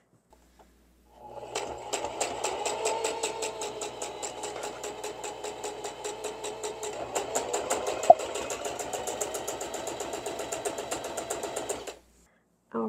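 Singer domestic sewing machine stitching a seam in linen. The motor whirs and the needle clatters in a rapid, even rhythm, starting about a second in, with one sharp click around eight seconds.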